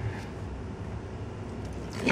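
Faint, steady low background rumble with no distinct event.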